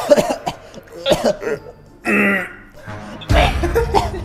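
Men coughing, clearing their throats and gagging on a foul-tasting drink, in short bursts with a brief strained vocal sound midway and a loud, heavy cough near the end.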